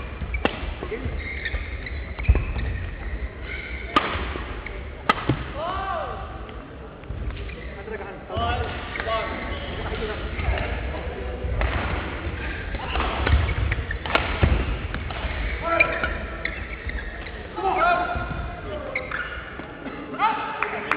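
A badminton doubles rally in a hall: the shuttlecock is struck by rackets with sharp cracks, and footfalls thud and shoes squeak on the court, with voices from around the hall.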